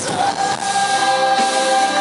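Male pop singer singing live over a band accompaniment, holding one long belted note that starts just after the beginning.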